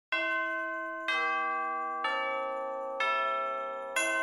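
Bell tones of intro music: four bell notes struck about a second apart, each ringing on and fading slowly.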